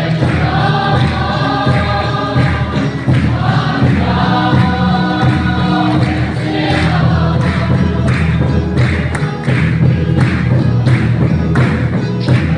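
A congregation singing a hymn together in chorus, over a steady beat of a large drum and hand-clapping, with keyboard accompaniment.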